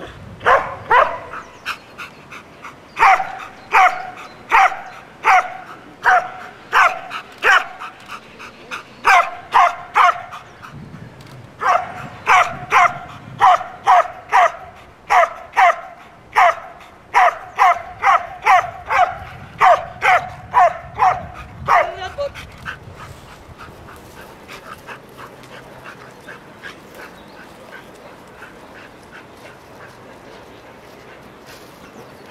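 A Belgian Malinois barking over and over in a steady rhythm, a little faster than one bark a second, with a brief break about ten seconds in. The barking stops about 22 seconds in.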